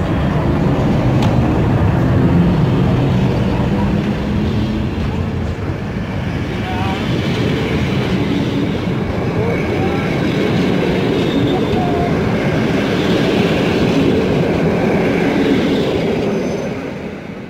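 A PKP class EP05 electric locomotive pulling out with a train of passenger coaches that roll past at close range: a steady rumble and rattle of wheels on rails, with a low hum from the locomotive in the first few seconds.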